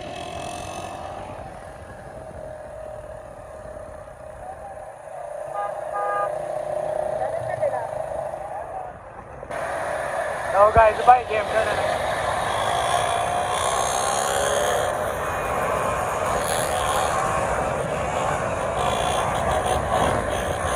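Several small motorcycles running along the road as their riders pull wheelies. A horn sounds briefly about six seconds in, and a short loud burst of wavering pitched sound comes about eleven seconds in.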